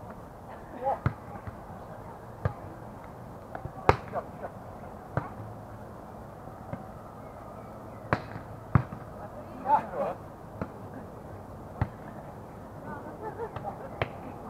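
A volleyball being struck by players' hands and forearms during a rally: a string of sharp slaps, one every second or two, with the loudest about four seconds in.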